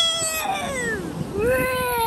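A bird calling: two long, high calls, each sliding down in pitch, the second starting about a second and a half in.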